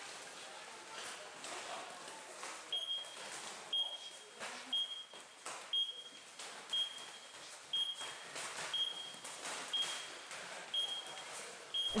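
Gloved punches landing on focus mitts in a series of sharp slaps, over a short high electronic beep repeating about once a second from a few seconds in.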